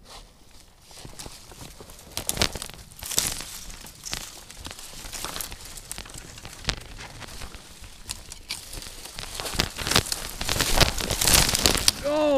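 Dry twigs and brush crackling, snapping and rustling as someone forces a way through dense, leafless shoreline undergrowth. Near the end the noise gets louder and busier as they fall down into the brush and dead leaves.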